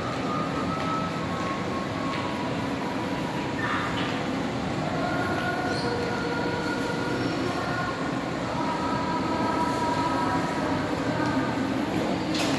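Steady ambient noise inside a large, nearly empty shopping mall hall: a constant rumble with faint held tones drifting in the background, and no crowd chatter.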